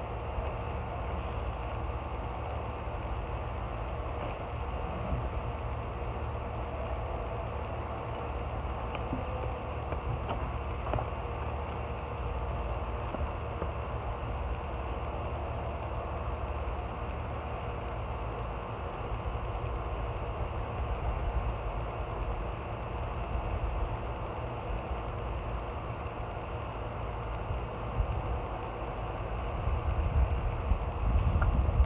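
Garden hose spray nozzle showering water onto freshly seeded soil: a steady hiss, like a soft rain, with a low rumble underneath.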